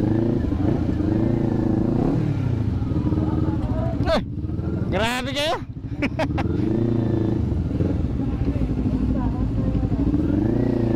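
Kawasaki Ninja 400 parallel-twin engine running at low speed, its revs rising and falling while creeping along. About five seconds in the engine drops back briefly and a sharp, steeply rising whine cuts in.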